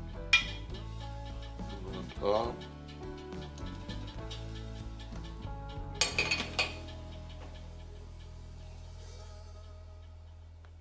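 A metal spoon clinks and scrapes against a glass baking dish as glaze is spread over a meatloaf. There is a sharp clink just after the start, a short scrape about two seconds in, and a quick run of clinks around six seconds, over background music.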